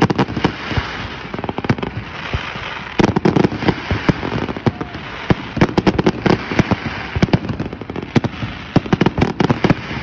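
Aerial fireworks shells bursting in quick succession: an irregular run of sharp bangs, several a second, coming in thicker clusters a few times.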